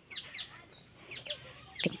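Small birds chirping: a scattered run of short, high chirps, each sweeping downward.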